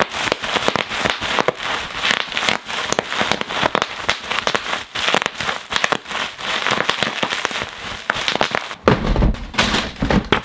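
Bubble wrap being pulled out and crumpled by hand: a dense, continuous crackling of sharp clicks and pops.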